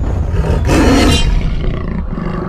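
Big-cat roar sound effect: one roar lasting about half a second, starting just over half a second in, over a steady deep rumble.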